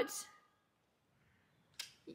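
A woman's spoken word trailing off, then near silence. Near the end there is one short click just before she speaks again.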